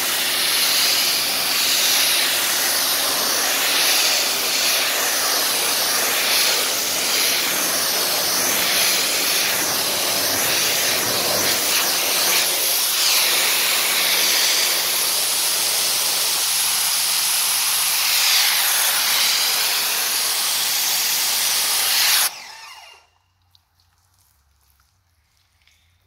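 Pressure washer jet spraying onto a car bonnet, a loud steady hiss of water on the paint as a spray-on sealant coating is rinsed off. The spray cuts off suddenly a few seconds before the end.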